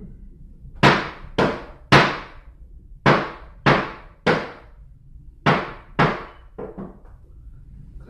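A gavel banging on a table in quick groups: three strikes, then three more, then two, then two lighter taps near the end, each with a short ringing decay.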